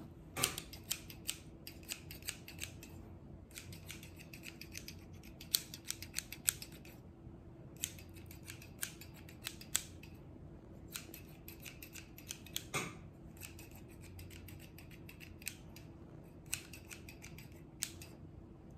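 Hair-cutting scissors snipping close to the microphone in quick runs of crisp snips, broken by short pauses.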